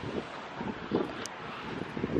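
Wind buffeting a handheld camera's microphone outdoors, an uneven rush with no clear voice in it.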